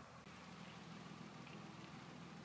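Near silence: a faint steady background hiss.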